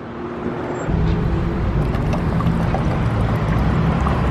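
A car engine running at a steady idle. Its low rumble starts abruptly about a second in.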